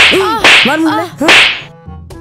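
Three sharp slaps in quick succession, each followed by a short pained cry from a boy.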